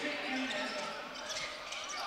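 Faint court sound of a basketball being dribbled on a hardwood gym floor during play, with faint voices in the hall.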